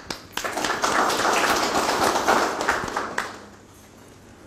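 Audience applauding for about three seconds, then fading out near the end.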